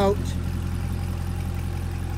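2020 Corvette C8 Z51's 6.2-litre LT2 V8 idling, a steady low engine note.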